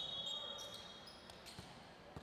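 A referee's whistle blast, held briefly and fading out within the first second. Then a few faint knocks and short high squeaks from the basketball and sneakers on the hardwood court, in a large echoing gym.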